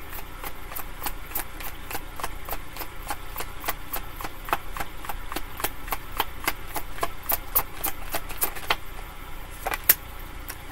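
Tarot cards being shuffled in the hands: a steady run of light card taps and flicks, several a second, which stops shortly before the end and is followed by one sharper snap.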